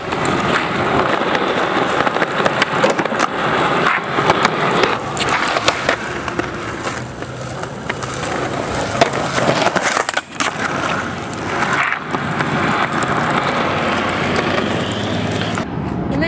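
Skateboard wheels rolling over rough concrete: a steady rumble broken by frequent clacks and knocks of the board, with a short lull about ten seconds in.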